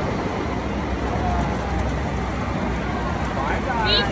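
Steady, noisy din of a busy indoor amusement park, with faint voices in it. Near the end a pitched sound rises steeply.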